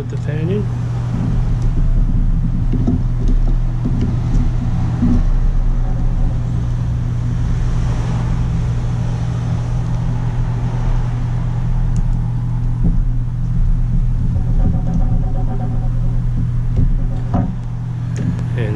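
A steady low mechanical hum with a rumble underneath, with a few light clicks from handling small laptop parts.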